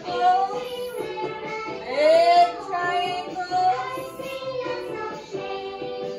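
A children's song about shapes playing from a video: child voices singing over a backing track.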